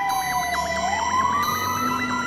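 Fire engine siren wailing: a slow tone falls in pitch and turns to rise again a little under a second in, with a faster repeating pulse layered under it.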